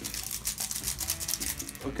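Empty plastic seasoning packet crinkling and rustling in the hand, a quick run of small crackles.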